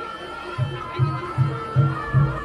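Live Javanese jaranan ensemble music: a low drum beat comes in about half a second in, about two and a half strokes a second, under a held high wind-instrument line and a repeating mid-pitched melodic figure.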